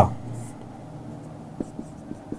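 Faint scratching of a marker writing on a whiteboard, with a few light taps of the tip near the end.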